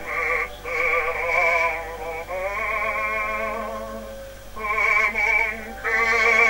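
A male baritone singing in operatic style, holding long notes with a wide, even vibrato and breaking off briefly between phrases. The sound is thin and narrow, as on an old recording.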